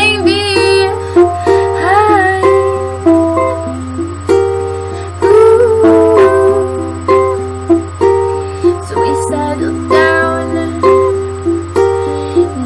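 Ukulele played in a steady run of plucked notes and chords, with a woman's voice singing over it at times. A steady low hum sits under it all.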